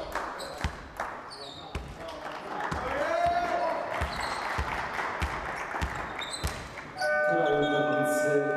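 Basketball dribbled on a hardwood court, a steady bounce a little under twice a second, with players' voices in a large hall. About seven seconds in, the game-ending buzzer sounds as a steady electronic horn.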